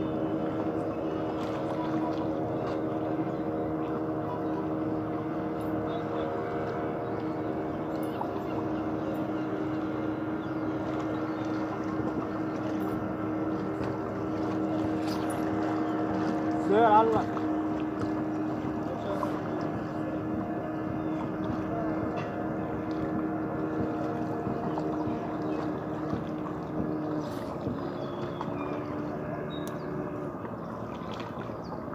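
A steady engine drone holding one even pitch throughout. Just past halfway a short wavering call rises over it briefly.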